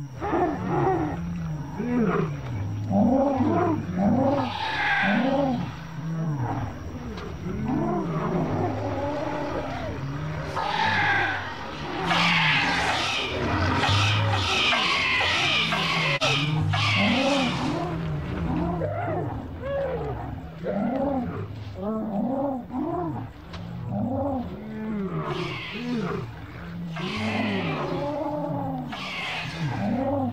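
Sound-designed dinosaur calls from a Torosaurus herd being harassed by dromaeosaurs: a steady stream of short, arching bellows and grunts, with high shrieks a few seconds in and a dense run of them in the middle.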